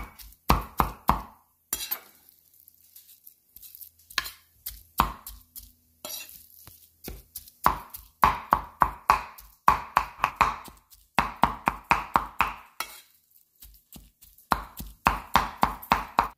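Meat cleaver mincing ground pork belly with chili and garlic on a round wooden chopping board. It chops in quick runs of about five strokes a second, with short pauses between the runs.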